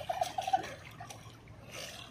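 A man's short, high-pitched laugh of about five quick pulses near the start, then faint splashing of pool water.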